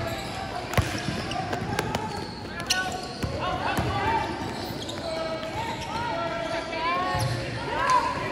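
A basketball bouncing sharply on the court floor several times in the first few seconds as it is dribbled up court, then short sneaker squeaks and indistinct shouting from players and spectators echoing in a large hall.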